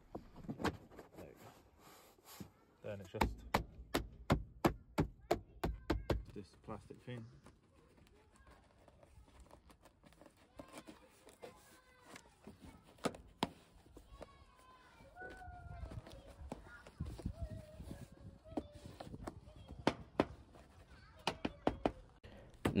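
Plastic interior trim panel of a van being pressed back onto its clips and pegs: a quick run of clicks and knocks over the first several seconds. Later come fainter taps and scrapes as a plastic trim tool tucks its edge under the rubber door seal.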